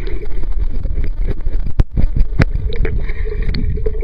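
Water churning around a submerged camera as a swimmer strokes past, a steady low rumble. A couple of sharp clicks come about halfway through.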